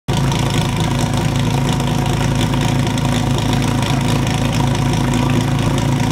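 Portable fire pump's small engine idling steadily, ready for the team's run.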